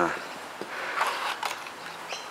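A man's drawn-out hesitation sound at the very start, then a low, quiet background with a few faint ticks.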